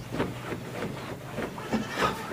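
Animal calls in the background, a few short sounds spread over the two seconds, above a low steady hum.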